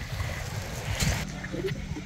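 Uneven low rumble of wind buffeting the microphone on an open beach, with faint voices and a single sharp click about a second in.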